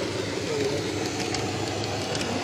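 N-scale model train carrying a camera car running steadily along the track: the even running noise of its wheels on the rails and its small electric motor.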